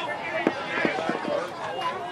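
Indistinct voices of spectators and players talking at the softball field, with a few faint short clicks.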